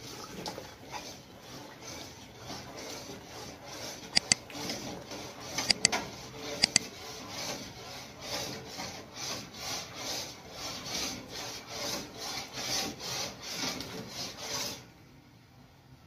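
A long metal spoon scraping round the bottom of a stainless steel stockpot in a steady rhythm of strokes, with a few sharp clinks of spoon on pot about four and six seconds in. The stirring keeps the thickening rice-flour atole from sticking to the bottom and forming lumps.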